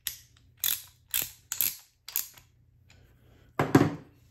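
Small metal parts clicking sharply about twice a second as hands work a wired metal bracket apart, then a louder quick double knock near the end.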